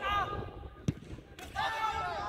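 Football players shouting, with one sharp thud of a football being kicked about a second in.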